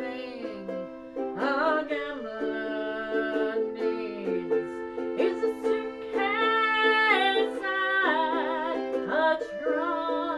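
Ukulele strumming and a Hohner button accordion holding steady chords, with a woman singing a wavering, vibrato melody over them.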